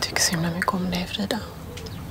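A woman speaking quietly, half-whispered, in short broken phrases that trail off near the end.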